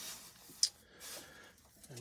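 Soldering iron tip being wiped clean on a tip cleaner: a soft hiss that fades within the first half second, a short scratch about half a second in, then faint room tone.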